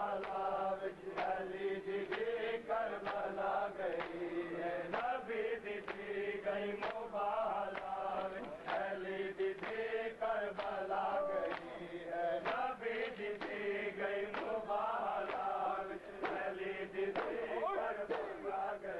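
A group of men chanting a noha, a mourning lament, in unison, over rhythmic chest-beating (matam). The hand-on-chest slaps land about twice a second, keeping time with the chant.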